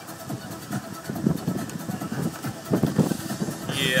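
Choppy water slapping unevenly against the hull of a rocking deck boat, in irregular surges. The boat's 3.8-litre V-6 OMC sterndrive engine is idling underneath.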